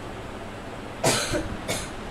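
Two short coughs about half a second apart, the first the louder, over a steady background hiss.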